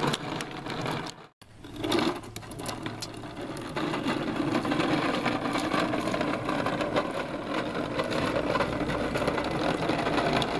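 Toy garbage truck pushed through shallow puddles: its plastic wheels and gearing give a rapid, continuous mechanical rattle, along with water splashing. The sound drops out briefly about a second in.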